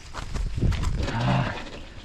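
Mountain bike rolling down a dirt trail, with tyre and wind noise. A short, low, drawn-out call rises over it about a second in.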